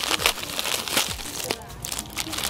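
Clear plastic bag crinkling and crackling as it is pulled open by hand, with several sharp snaps of the plastic.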